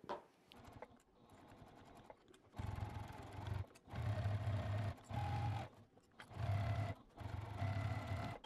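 Juki TL2000Qi straight-stitch sewing machine stitching in about five short runs with brief stops between them, starting a couple of seconds in. The stops come from the machine being fed slowly around a corner through quilted, foam-backed layers.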